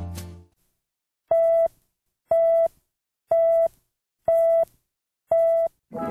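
The end of a music clip fades out, then five identical electronic beeps follow, one each second. Each beep is a steady mid-pitched tone a little under half a second long.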